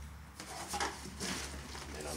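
Steel wool pads rustling and scraping as they are pushed by hand into a glass jar, in several short scratchy rustles starting about half a second in, over a low steady hum.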